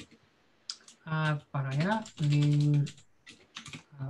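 Computer keyboard typing: a few scattered keystrokes near the start and a short run of them near the end. A man's voice speaks briefly in the middle and is the loudest sound.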